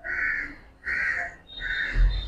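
A crow cawing: three harsh caws in quick succession, about two-thirds of a second apart.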